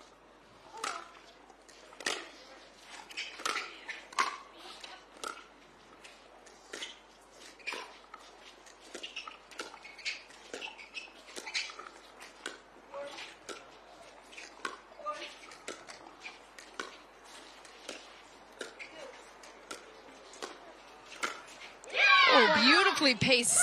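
Pickleball paddles striking the plastic ball back and forth in a long rally: sharp pops about once or twice a second at an uneven pace.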